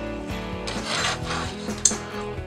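A hand handling a plastic model kit: a brief rubbing scrape about a second in and a light click near the end. Quiet background guitar music plays throughout.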